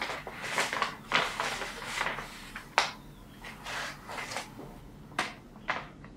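Paper rustling as an envelope and a letter are handled and the sheet is unfolded, irregular crinkling with a few short, sharp crackles in the second half.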